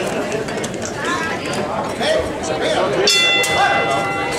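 Crowd chatter in a hall, then about three seconds in a boxing ring bell rings out with a sudden start and a ringing tail, signalling the start of the first round.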